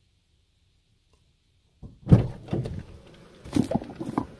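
Near silence, then about two seconds in a loud thump followed by rustling and a few more knocks near the end.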